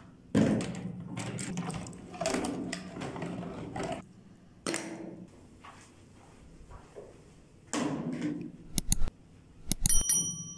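Apricots tumbling and knocking about in a plastic basin as it is tossed, then scattered handling knocks and a dull thud as the basin is carried and set down on a wooden table. A few sharp clicks near the end.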